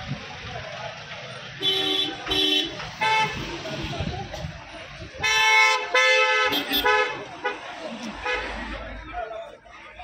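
Vehicle horns honking in busy street traffic: a quick double beep about two seconds in, then a longer, louder blast a little after five seconds, with a few more short toots around it.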